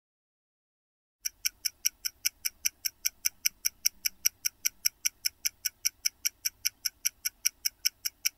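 Stopwatch ticking, a steady run of sharp ticks at about five a second, starting a little over a second in.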